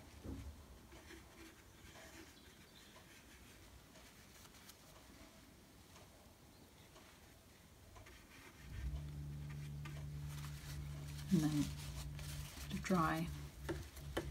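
Faint brush-on-paper and brush-in-water-jar sounds, then a steady low hum that starts about nine seconds in, with a woman's voice briefly near the end.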